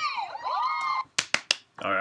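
High-pitched young women's voices from a Korean variety-show clip, cutting off about a second in. Then three sharp clicks in quick succession.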